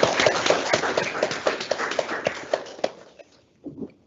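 Audience applauding at the end of a talk, a dense patter of clapping that dies away about three seconds in.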